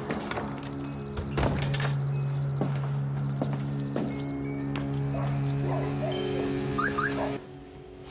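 Background music score of sustained, held tones, with several scattered thunks over it, the strongest about one and a half seconds in. The music cuts off suddenly near the end.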